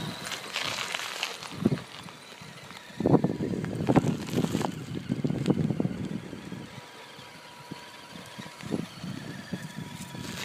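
Axial SCX10 RC crawler towing a loaded trailer over loose gravel: irregular crunching of small tyres on the stones, loudest from about three to six seconds in, with a faint steady high whine under it.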